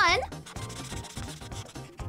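Imagine Ink marker rubbing back and forth on coloring-book paper as a square is colored in, a steady dry scratching.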